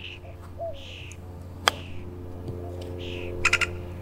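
A single sharp click of a golf club striking the ball on a short chip shot, a little under halfway through. A brief cluster of fainter clicks follows near the end, over a low steady hum.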